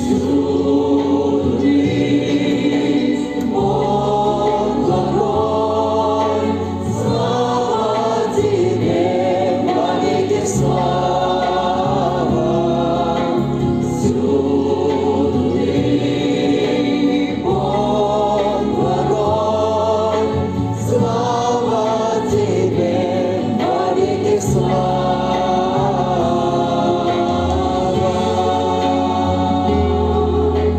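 A group of voices singing a Christian hymn with instrumental accompaniment, the bass holding each note for a second or two.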